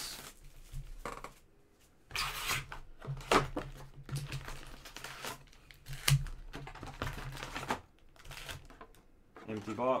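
Hands opening a cardboard box of trading cards and lifting out the foil-wrapped card packs: rustling packaging, crinkling wrap and irregular clicks and taps, with a louder crinkling rustle about two seconds in.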